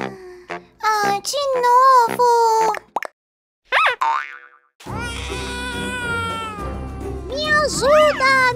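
A young girl's high, drawn-out exclaiming voice, then a springy cartoon 'boing' sound effect about four seconds in, followed by upbeat children's background music.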